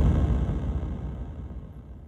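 A deep bass boom fading slowly away, the tail of an impact sound effect in an electronic dance mix.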